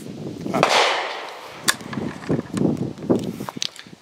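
A rush of rustling noise about half a second in, then several sharp clicks or cracks.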